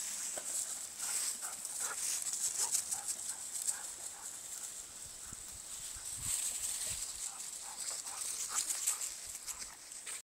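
Feet and dogs running through dry fallen leaves: a continuous crunching and rustling made of many quick, irregular steps.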